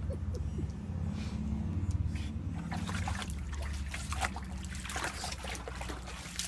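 Pug growling low and continuously at a toy shark in the water, a sign of play aggression; the growl stops near the end. Water sloshes and splashes as the dog wades and pushes its face into the pool.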